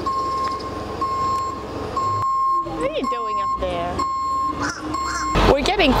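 Dump truck's reversing alarm beeping, a high tone broken by short gaps, with the truck's engine running low underneath.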